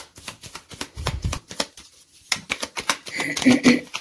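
Deck of tarot cards being shuffled by hand: a quick run of card clicks and flicks, with a dull low thud about a second in.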